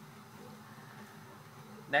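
A steady low droning hum, like a faint buzz, holding one level throughout.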